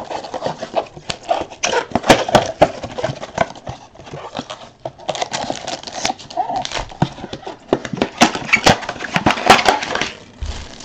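Foil trading-card pack wrappers crinkling and crackling as they are torn open and handled, in a quick, irregular run of sharp crackles.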